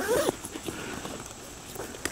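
A brief murmur, then the zipper of a padded nylon camera bag being drawn open slowly and quietly, with light rustling of the bag.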